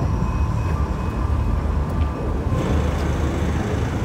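A steady low rumble with faint steady hum tones above it, like a running engine.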